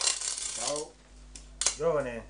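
Coins dropped and clinking: a bright jingle right at the start that rings for nearly a second, and a shorter clink about one and a half seconds in.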